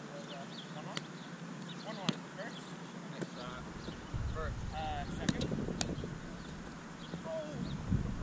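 Sharp slaps of hands hitting a Spikeball and the ball smacking off the roundnet during a rally: several separate hits, two close together about five seconds in.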